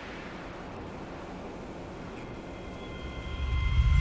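Sound design of a channel logo ident: a steady low rumble with hiss, joined about halfway by thin, high, ringing tones, the whole swelling in loudness toward the end.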